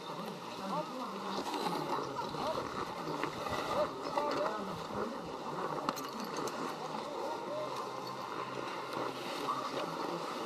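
Faint distant voices over a steady mechanical hum.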